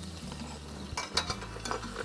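Several short clinks and scrapes of a utensil against a fry pan, bunched in the second half, as braised Moreton Bay bugs (slipper lobsters) are lifted out of the pan.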